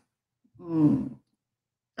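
A woman's short wordless vocal sound, lasting under a second and starting about half a second in, quieter than her speech.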